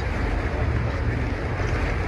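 Wind buffeting the microphone over the steady rush of a sailing catamaran under way through choppy sea, with a constant low rumble.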